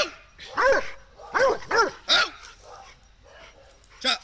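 Dog barking: five short barks in the first two seconds or so, then only faint sound.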